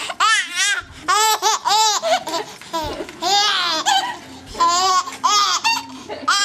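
A baby laughing hard: four runs of high-pitched laughter, each a quick string of short squealing bursts, with brief pauses between.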